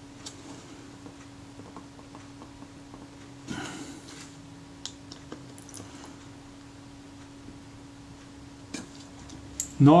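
Faint, scattered clicks and scrapes of a small screwdriver working at the seized screws on a Rolleiflex Automat TLR's metal front plate, over a steady low hum. A brief louder rustle comes about three and a half seconds in.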